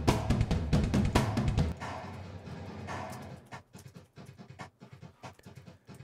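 Sampled drum kit in Superior Drummer 2 playing back a pattern of heavy drum hits. Near the two-second mark the hits stop and a long recorded room reverb tail from the kit's mic positions dies away over a second or two, leaving only a few faint hits.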